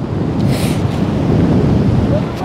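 Wind buffeting the microphone over shallow surf washing across the sand, with a brief hiss of water about half a second in.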